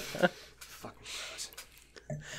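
A spoken syllable or chuckle cut short, then a pause with a soft breathy hiss under quiet room tone.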